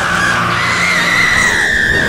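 A woman's long, loud scream, rising in pitch at first and then held high.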